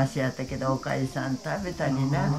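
An elderly woman speaking Japanese.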